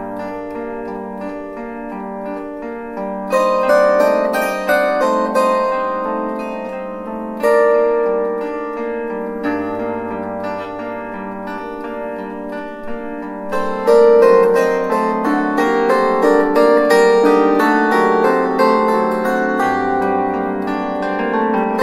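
Solo bandura playing an instrumental passage: plucked chords and melody notes ringing over one another, with a low bass note held under them near the middle. Louder chords come in three times: about three seconds in, at about seven and a half seconds, and at about fourteen seconds.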